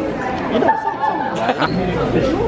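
Overlapping voices of several people talking and chatting, with a few short clicks or knocks about a second and a half in.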